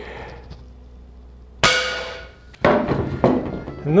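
A single air-rifle shot about one and a half seconds in, a sharp crack followed by a ringing note that fades over about a second, as the 0.29 g pellet strikes a 4 mm polycarbonate sheet without getting through, leaving only a dent. About a second later comes a second, rougher noise with a few sharp clicks.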